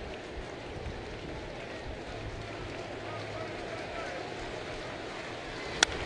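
Ballpark crowd murmur, then near the end a single sharp crack of a baseball bat hitting a pitched curveball, popping it up.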